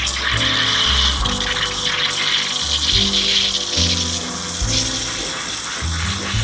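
Espresso machine steam wand hissing steadily while steaming milk in a steel pitcher, over background music with a stepping bass line.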